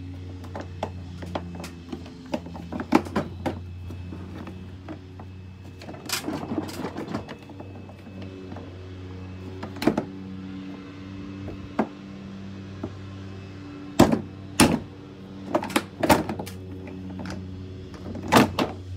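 Hard plastic knocks and clatters as the plastic hood of a toy ride-on jeep is lifted and a cordless tool battery is handled, several sharp hits close together near the end. A steady low hum runs underneath.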